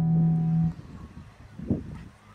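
Guitar music holding one sustained note, which cuts off about a third of the way in. It gives way to quieter outdoor background noise with a few low rumbles.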